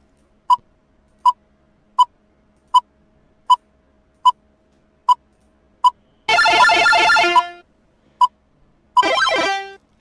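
Electronic countdown-timer beeps, short and evenly spaced about every three-quarters of a second. About six seconds in, a longer synthesized sound effect lasts about a second, and a shorter one comes near the end.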